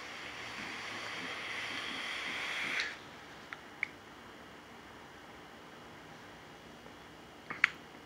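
A long drag on a vape: a steady hiss of air drawn through the device, growing slightly louder for about three seconds before stopping suddenly. A few small clicks follow.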